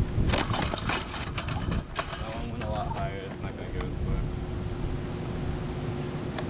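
A quick run of clattering knocks from a homemade spring-powered wooden Frisbee thrower as its lever arm is released.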